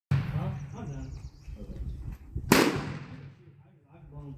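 A single gunshot about two and a half seconds in, a sharp crack with a short echoing tail, over low talk.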